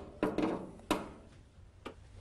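Three light knocks and clicks of a wired electrical part on a VW Beetle being pushed up against the body and fitted into its mount, the last one short and sharp near the end.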